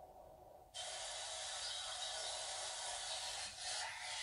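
A steady hiss that starts suddenly less than a second in and runs on evenly.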